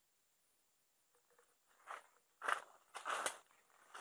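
Footsteps crunching on dry leaf litter and brushing through undergrowth: four or five steps in the second half, after a near-silent start.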